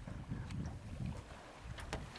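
Wind buffeting the microphone in a low uneven rumble out on open water, with a couple of faint clicks near the end.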